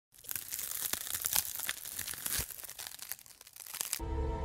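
Crackling hiss with many scattered pops, an old-film crackle sound effect. It starts just after the opening and thins out toward the end.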